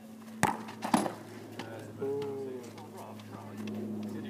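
A football kicked from the penalty spot: a sharp thump of the boot on the ball, then about half a second later a second, slightly louder bang as the ball strikes something at the goal end. About two seconds in, a short voiced call is heard.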